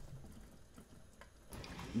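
Faint bubbling of seasoned broth boiling in a large stock pot, with small scattered ticks.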